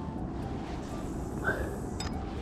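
Steady low rumble of wind on the microphone, with one brief voice sound about one and a half seconds in.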